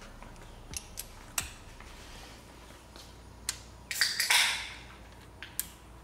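Scattered metal clicks and clinks as a ground cable's terminal and hand tools are worked onto an alternator mounting stud, with a brief scrape about four seconds in.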